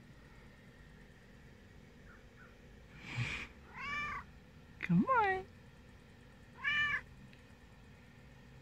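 Silver tabby domestic cat meowing three times in short calls, each rising and falling in pitch, the middle one the loudest and sliding down at its end. A short breathy noise comes just before the first meow.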